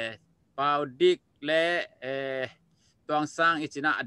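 A man speaking in drawn-out phrases with a wavering pitch, with short pauses between phrases.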